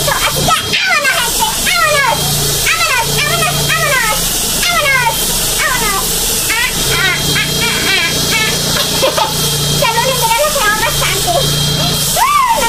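A woman's voice talking to the camera in a fast, high-pitched, animated way.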